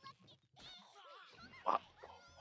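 Faint Japanese anime dialogue with high-pitched character voices, and one short, louder vocal burst near the end.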